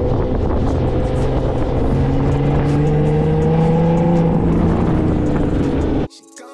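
Car engine running under way, its pitch rising slowly through the middle, with steady road and wind rumble.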